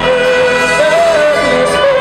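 Live band music from nylon-string acoustic guitar, upright bass and drums, over which a long held melody note rises in pitch about a second in and falls back.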